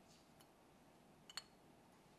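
Near silence, with one faint, short click about two-thirds of the way through as a CPU is seated into the frame of a delidding tool.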